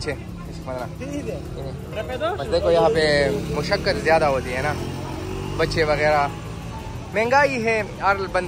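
Busy street sounds: people's voices over the steady hum of road traffic.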